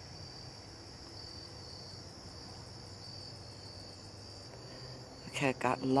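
Crickets chirping outdoors at dusk in a steady, high-pitched chorus.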